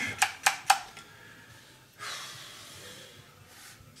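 Three quick, sharp clicks in the first second as a broken hand rivet gun is handled, then a long breathy exhale of nearly two seconds.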